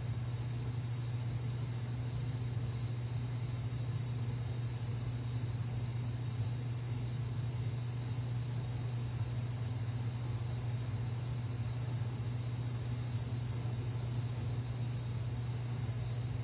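Steady low hum with a faint even hiss beneath it, unchanging throughout: background room noise such as an air conditioner or electrical hum.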